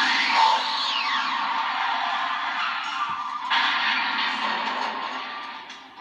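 Film sound effects from a television's speakers, recorded across a small room: a loud rushing roar of the DeLorean time machine arriving and speeding past, with a falling whistle about a second in. The roar dips a little after 3 s, swells again and fades near the end.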